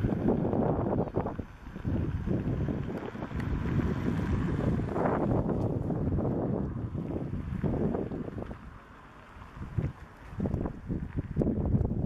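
Wind buffeting the camera microphone in uneven gusts, a low rumbling noise that briefly drops away about nine seconds in.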